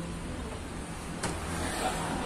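Steady low background rumble with a single sharp click just over a second in.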